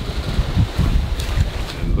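Strong wind buffeting the microphone, a loud, gusting low rumble.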